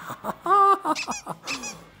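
A man's high-pitched, squeal-like vocal exclamations of delight, without words: one held high note, then short squeaky yelps.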